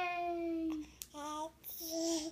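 A baby vocalizing: three drawn-out, sing-song vowel sounds, the first about a second long and slowly falling in pitch, then two shorter ones.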